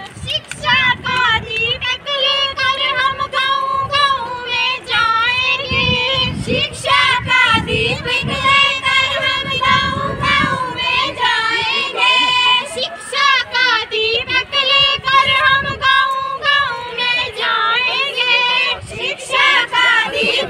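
High-pitched voice singing a melody in short phrases, its pitch bending and wavering, continuing throughout.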